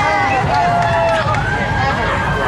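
Crowd of street spectators talking and calling out, many voices overlapping, over a steady low rumble.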